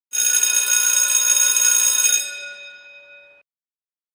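Bright ringing sound effect made of many high tones sounding together. It starts suddenly, holds loud for about two seconds, then fades and cuts off.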